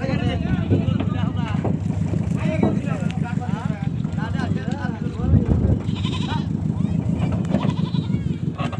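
Engine of a wooden river boat running at a steady, low, pulsing drone, with voices talking over it.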